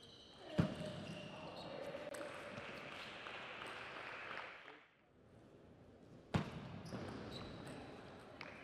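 Table tennis match play: a sharp knock about half a second in and another near six seconds in, with small ball clicks. Each knock is followed by a few seconds of voices and noise in the hall.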